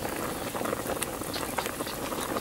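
Mutton boiling in water in a large aluminium pot: a steady rolling boil with a dense scatter of small bubbling pops. The meat is being boiled down to tenderise it before the water is reduced.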